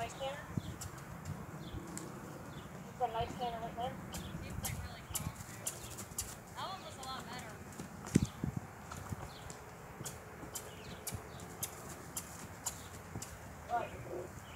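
Horse cantering on grass on a lunge circle: soft hoofbeats and scattered short sharp clicks, with one louder dull thud about eight seconds in.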